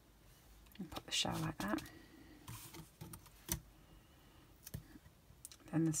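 Faint, scattered taps and clicks of paper pieces and double-sided tearing tape being handled and pressed down on a craft mat, with a short papery rustle about two and a half seconds in.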